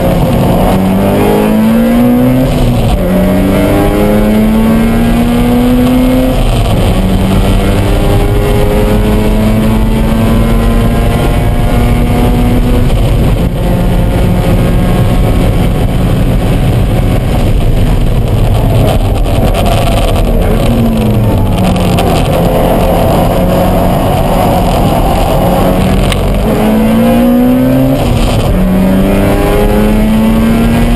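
Mazda RX-7 FD's engine heard from inside the cabin during a hard track lap. Its pitch climbs through the gears and drops back at each upshift. About two thirds of the way through it falls away as the car slows for a corner, then climbs again near the end.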